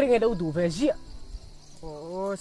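A man's voice repeating "no" over faint background music with steady held notes.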